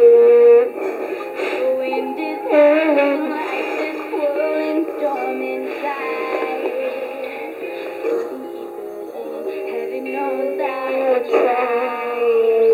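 A young girl singing into a toy karaoke machine's microphone, her voice coming out of its small speaker thin and narrow, with no bass.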